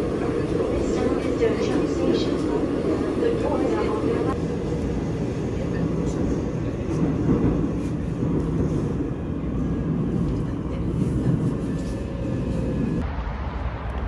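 Steady low rumble of a subway train car running, heard from inside the car. Near the end it gives way suddenly to lighter street traffic noise.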